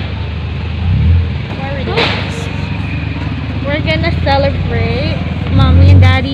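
A woman talking over the steady low hum of an idling vehicle engine.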